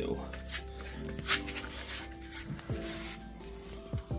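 Background music with held, stepping notes. Over it come a few brief rustles and knocks, the loudest about a second in.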